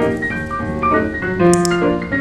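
Background piano music in a lively ragtime style, a quick run of notes and chords.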